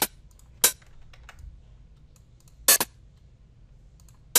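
Hi-hat sample played through the Nexus synth plugin, sounding once each time a note is clicked into the piano roll: short bright hits, four in all, the last two close together, with faint mouse clicks between.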